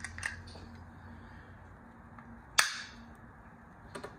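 Handheld corner-rounder punch snapping shut once with a single sharp, loud click a little past halfway, after a few small clicks of handling. The punch is one that its owner says no longer rounds corners properly, possibly because of the photo paper.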